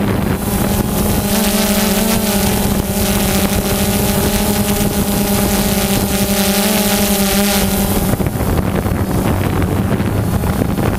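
Drone motors and propellers humming steadily, heard from the aircraft itself with wind rushing over the microphone. A higher motor whine joins about a second in and drops away near eight seconds.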